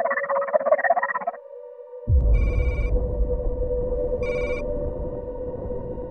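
Sci-fi film sound design: a steady synth drone with a dense warbling electronic sound over it for the first second or so. About two seconds in, a deep rumble comes in and holds. Two short ringing electronic alert tones follow, about two seconds apart.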